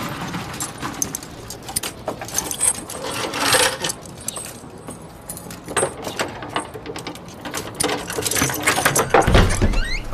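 Keys jangling and small metal clicks as a padlock on a wooden door is worked open, with a low knock near the end as the door is pushed open.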